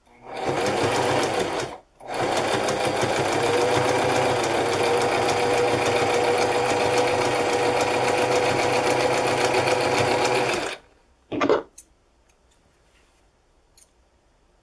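Electric domestic sewing machine stitching a folded fabric edge: a short run of about a second and a half, a brief stop, then a steady run of about nine seconds that cuts off. A short, loud sound follows about a second after it stops.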